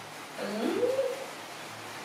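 A baby macaque gives one short coo call, a rising note that levels off about a second in.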